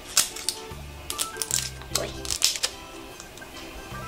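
Plastic wrapping on an LOL Surprise ball crinkling and crackling in short bursts as it is peeled off by hand, over background music.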